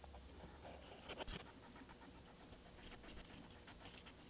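Near silence: room tone with faint handling sounds of a paper piece and glue bottle, and a small click about a second in.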